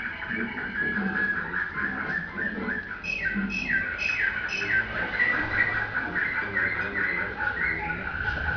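Canary singing a continuous nightingale-type (slavujara) song: rapid trills and runs of short repeated notes, some sweeping downward.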